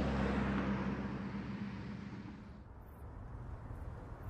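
Car engine and road noise heard from inside a moving car: a steady low drone that fades away over the last couple of seconds.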